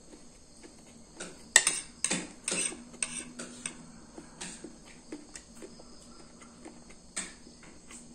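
Metal spoon and fork clinking and scraping against a ceramic plate while scooping corn kernels. The loudest clatter comes about one and a half seconds in, followed by a run of quicker clicks and then scattered single taps.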